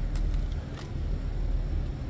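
Steady low outdoor rumble with a few faint clicks as a color guard's rifles are brought to the shoulder.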